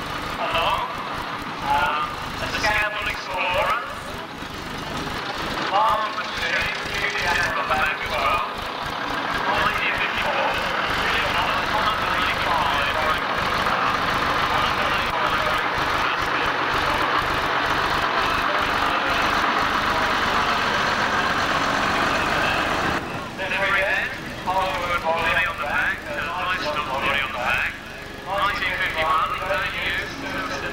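A heavy vintage lorry runs as it drives slowly past, with indistinct voices. For about ten seconds in the middle, a steady louder rushing noise covers the voices.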